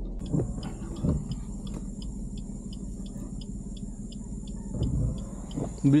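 Insects calling: a steady high-pitched drone with short regular chirps about three a second, over a low rumble.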